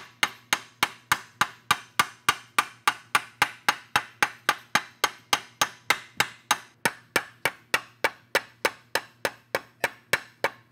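Hammer striking an aluminum strip held over steel vise jaws, forming a bend: a steady run of sharp metallic taps, about three to four a second.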